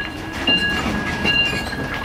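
City transport noise interrupting the scene: a loud background rumble with a high squeal that switches back and forth between two pitches a few times.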